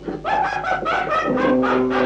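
Raw black metal demo recording: after a brief dip, rapid drum hits and guitar come in, settling into a held guitar chord about halfway through.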